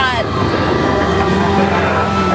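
Open-air amusement ride car running fast, with a steady rumble and rush of wind. Right at the start a brief voice glides sharply down in pitch.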